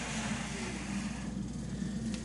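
A block with a force sensor on it sliding across a wooden board as it is pulled by a string, a soft scraping hiss that fades out about a second in, over a steady low hum.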